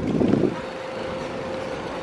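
Outdoor background noise from a busy walkway: a steady low rumble, a little louder in the first half second, with a faint steady hum.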